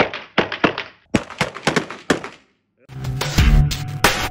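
Several revolvers firing in quick succession, a rapid string of sharp shots, some overlapping, with short echoes. About three seconds in, the shots give way to loud music with a heavy beat.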